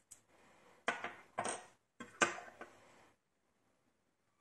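Small metal lock-cylinder parts and steel tweezers clicking and clinking as the plug is taken apart, with a few sharp clicks about a second in and a close pair around two seconds, over soft handling noise.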